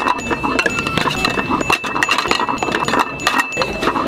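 Empty sushi plates clinking one after another as they are dropped quickly into a table's plate-return slot, several clicks a second, over a steady high tone.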